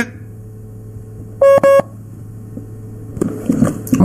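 A pair of short electronic beeps on the phone-call line over a steady low hum, a sign of the call connection failing.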